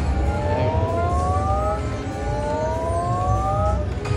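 Slot machine bonus sound effect: an electronic tone that slides steadily upward in pitch for nearly two seconds, played twice, over the machine's low bass rumble. It plays while the reels spin during the bonus feature.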